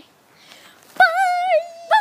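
A high voice singing one long held note, starting about a second in and dipping slightly in pitch near its end; a second, wavering note begins right at the end.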